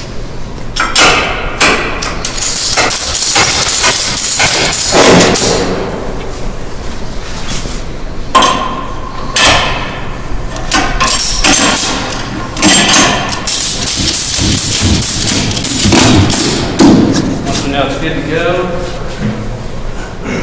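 Metal clinks, rattles and thumps of cargo tie-down strap hardware being handled on a missile's loading pallet, in irregular bursts.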